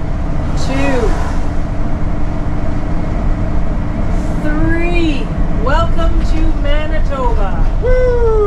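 Steady engine and road drone inside a motorhome cab, overlaid by several drawn-out rising-and-falling whooping cheers: one about a second in, then a string of them in the second half.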